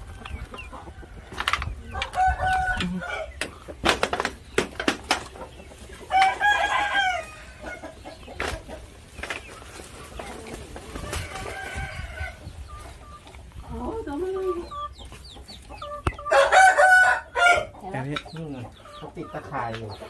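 Fighting-cock roosters crowing several times, each crow a long pitched call lasting a second or two, the loudest near the end. Sharp knocks and clicks come in between.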